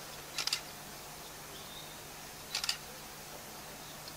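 Two short bursts of three or four rapid, sharp clicks, about two seconds apart, over a faint steady hum in an otherwise quiet, silent crowd.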